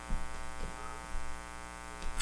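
Steady electrical mains hum in the microphone and sound system, a low buzz made of many evenly spaced tones, with a few faint low bumps.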